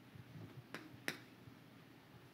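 Two sharp taps of chalk against a chalkboard, about a third of a second apart, over faint room tone.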